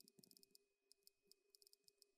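iPad on-screen keyboard clicking faintly as a message is typed quickly: irregular clicks several a second, with a couple of short pauses, over a faint steady hum.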